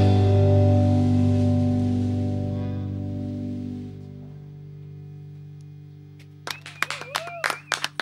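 The band's final chord on electric guitar and keyboards ringing out and slowly fading away. Near the end, a few sharp hand claps and a short voice break in as the song finishes.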